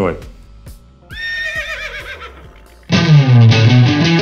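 A horse whinny, a high wavering call that falls in pitch, lasting about a second and a half from about a second in. About three seconds in, loud distorted electric guitar music starts.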